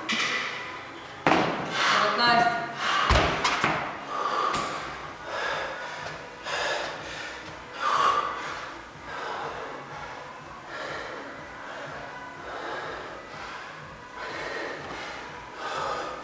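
Two thuds about one and three seconds in, the second louder, then a man breathing hard in loud, gasping breaths every second or so. He is winded from handstand push-ups.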